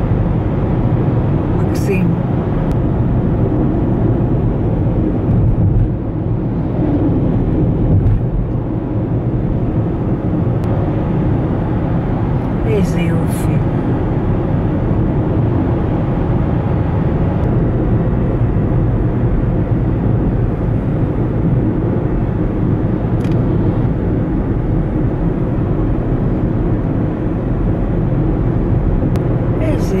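Steady road and engine noise of a car cruising on a highway, heard from inside the cabin, with a few faint clicks.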